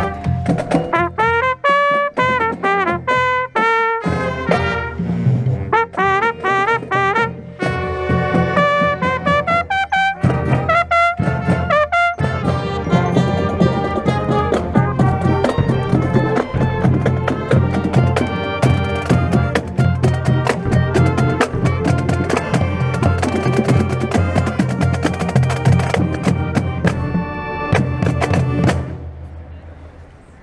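Marching band playing, with a trumpet close to the microphone carrying a melodic line with quick runs for the first twelve seconds or so. Then the full band, with drums, plays together, and the music dies away just before the end.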